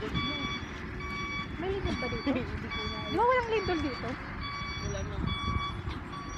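A wheel loader's reversing alarm beeping steadily, one short tone about every second.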